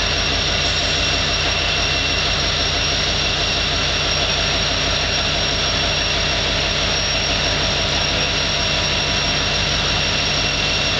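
Union Pacific EMD SD70ACe locomotive's 16-cylinder two-stroke diesel running steadily at close range: a low engine rumble with a steady high-pitched whine over it, holding at one level throughout.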